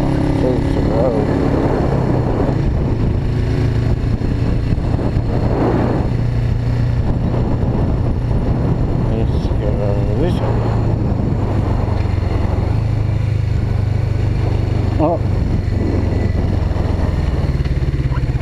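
Suzuki GS500E's air-cooled parallel-twin engine running steadily while the motorcycle cruises at low road speed, with wind noise over it.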